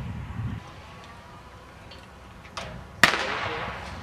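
A single sharp clack about three seconds in, trailing off in a short rattle, from the plastic vanes of a Vertec vertical-jump tester being struck. A softer click comes half a second before it.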